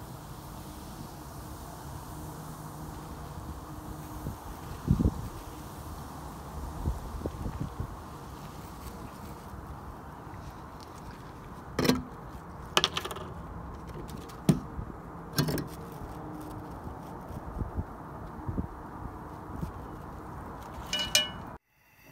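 A few scattered light clinks and knocks from cookware and utensils being handled, over a steady low background hum.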